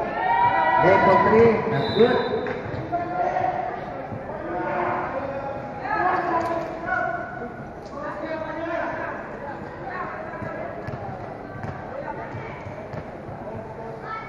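Indistinct shouting voices from players and spectators during a basketball game, loudest in the first two seconds, with a basketball bouncing on a concrete court.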